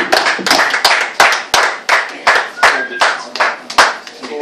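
Audience clapping, with one pair of hands close by clapping loudly and evenly about three times a second over the lighter clapping of the rest, stopping near the end.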